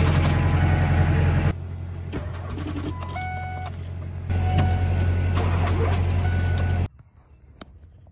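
Ford F-350's 7.3-litre diesel being turned over by its starter without catching, in two long cranks with a pause between them in which a few short dashboard chime tones sound. The batteries are too weak to start it in the cold.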